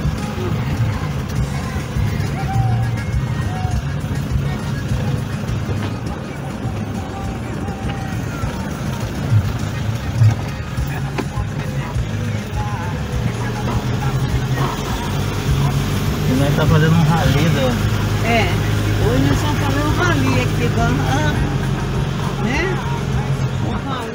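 Inside a car driving slowly over a cobbled street: steady engine and road rumble, with music and a singing or talking voice over it that grows clearer in the second half.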